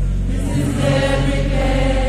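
Gospel choir singing with bass-heavy backing music, many voices holding long notes together.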